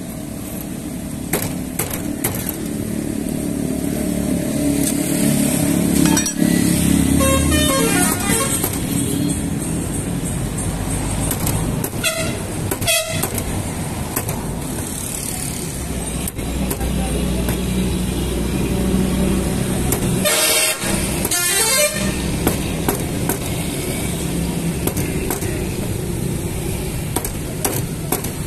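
A motor vehicle engine running close by, with horn toots, over occasional sharp knocks of a blade on a wooden chopping block.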